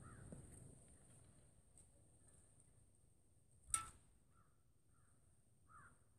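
A single sharp crack about three and a half seconds in, from a slingshot shot. Crows caw faintly a few times over otherwise near silence.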